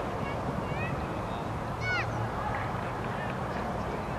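Open-air ambience: a steady low background hum with faint distant voices and a few short, high arched calls, the clearest about two seconds in.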